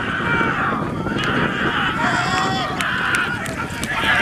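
Racehorses breaking from the starting gate and galloping on a sand track, hooves drumming, with people shouting and calling over them.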